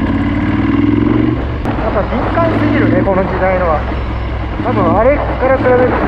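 Ducati 916's 90-degree V-twin engine running steadily at low revs in city traffic, with the rider talking over it.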